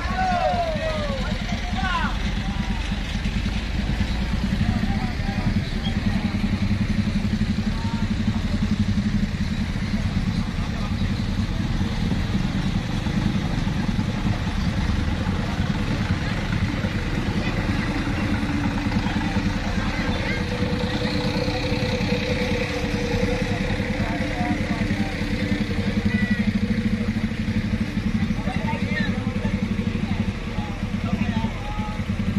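Vehicle engine running steadily at a low pitch, with people's voices in the background.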